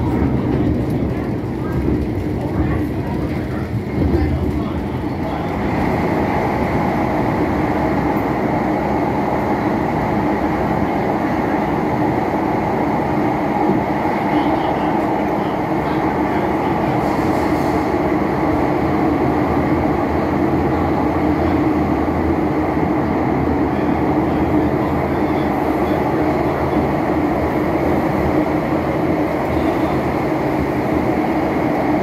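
MTR M-Train electric train heard from inside the passenger car while running along the line: a steady loud rumble from the wheels on the track. There is one thump about four seconds in, and a steady hum rises above the rumble from about six seconds on.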